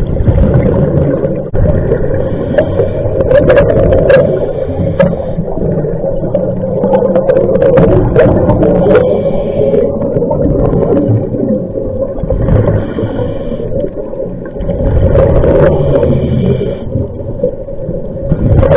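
Scuba regulator breathing heard underwater. Short hissing inhalations through the regulator recur every few seconds, and between them the exhaled air escapes as a loud, steady bubbling rumble.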